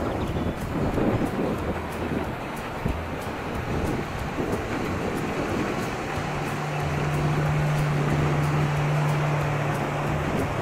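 Wind buffeting the microphone over water lapping against a small boat. About six seconds in, a motorboat engine's steady drone comes in and holds.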